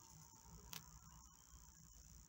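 Near silence: room tone with a faint steady hiss and one short, faint click a little before the middle.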